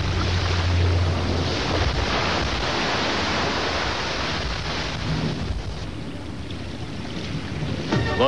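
Sea surf washing on a stony shore, a steady rushing with wind on the microphone, easing a little in the last couple of seconds.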